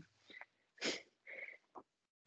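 A person's quick breath into a close microphone about a second in, with a few faint mouth sounds around it.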